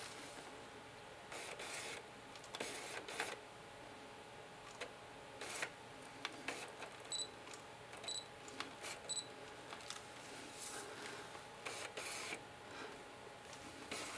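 Faint handling clicks and rustles from a Canon 40D DSLR with a 70-200mm f/2.8L lens mounted, and several short high beeps just past the middle from the camera's autofocus-confirmation beeper, which signals that the lens has locked focus.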